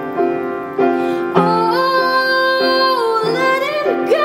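Upright piano playing a steady, repeated pattern of chords. About a second and a half in, a woman's voice comes in on a long held note that bends in pitch near the end.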